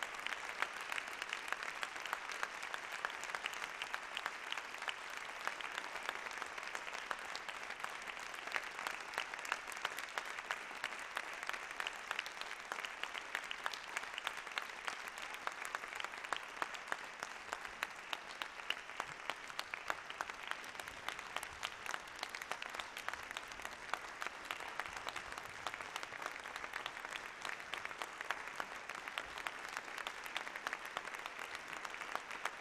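Audience applauding: dense, steady clapping from a large crowd in a hall.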